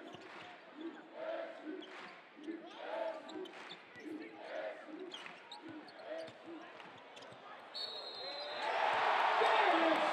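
A basketball dribbled on a hardwood court, about two bounces a second, under crowd voices in a large arena. Near the end a referee's whistle blows for a foul and the crowd cheers loudly.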